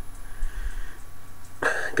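Soft sniffing at a glass of beer held just under the nose, a faint breathy hiss between spoken remarks.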